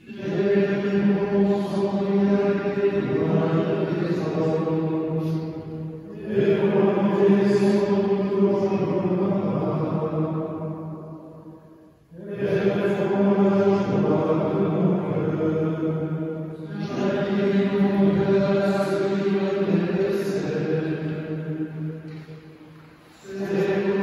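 Men's voices singing liturgical chant, long phrases held mostly on one steady note, each broken by a brief pause for breath every five to six seconds.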